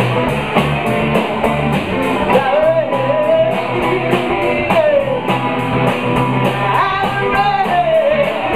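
Live blues-funk band playing: electric guitar, bass and drum kit with a steady hi-hat beat, and a woman singing the melody over it.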